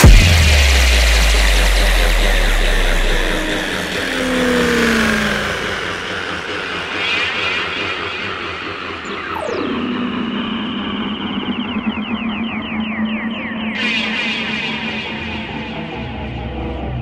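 Dubstep track winding down into its outro. A heavy bass hit at the start fades over about three seconds into a wash of synth noise. Near the middle a synth sweep falls in pitch, then a steady low drone runs with rapid stuttering glitch effects and a burst of hiss near the end.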